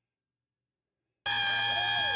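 Dead silence for over a second, then a steady, high electronic tone with overtones starts abruptly and holds.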